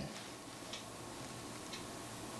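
Quiet pause with faint, light ticks about once a second over low room hiss.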